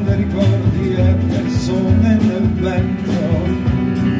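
Live instrumental passage from a jazz quartet with orchestra: piano, guitar, double bass and drums over a steady beat.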